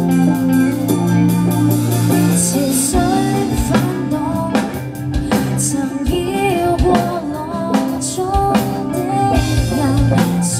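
Live rock band playing on stage: electric guitars and a drum kit with a lead singer. Held guitar chords ring for the first few seconds, then the drums come in with steady hits about three seconds in and the singing starts.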